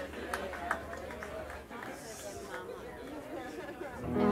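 Crowd chatter, many voices talking at once with no single voice standing out, and a few sharp claps in the first second.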